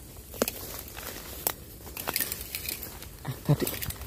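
Dry bamboo leaf litter and brush crackling and rustling underfoot and against the body as a person pushes through undergrowth, with sharp crackles every fraction of a second.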